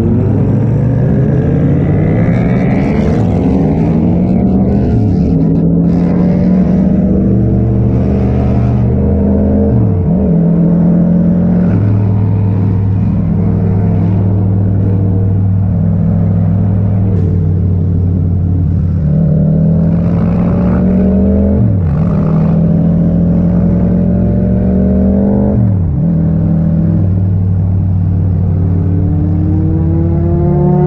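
Yamaha MT-07's 689 cc parallel-twin engine heard from the rider's seat, pulling up through the gears: its pitch climbs for several seconds, then drops suddenly at each upshift, three times, with steady cruising in between, and climbs again near the end.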